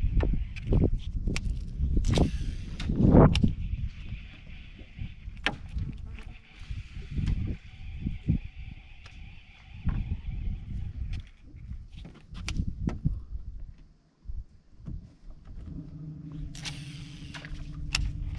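Wind rumbling on the microphone aboard a small boat, with scattered knocks and clicks and a faint, steady high-pitched whir through about the first ten seconds.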